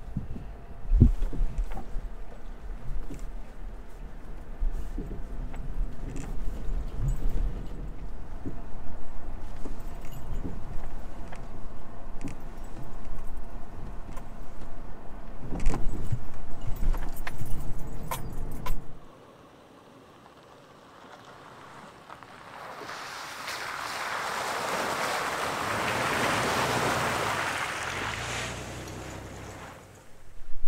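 Cabin noise of a Toyota 4Runner driving a rough dirt road: a low rumble with loose gear rattling and knocking. It cuts off abruptly about two thirds of the way through, and after a quiet stretch a rushing hiss swells and fades.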